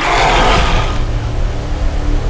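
Trailer sound design: a sudden loud noise hit right at the start that slowly fades over a steady low rumbling drone with a faint held tone.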